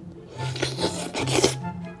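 Close-up eating sounds: two short, noisy mouth sounds as a bite of steamed porcupinefish liver goes in, about half a second in and again near a second and a half, over background music.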